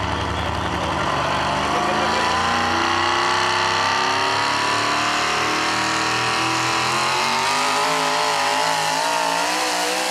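Modified Ford pickup truck's engine running hard under load as it pulls a weight-transfer sled: the revs climb steadily for several seconds, then waver up and down in the last few seconds.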